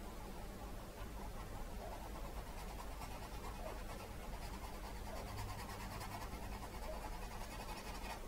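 Faint scratchy strokes of a small paintbrush working acrylic paint on a canvas, over a steady low hum.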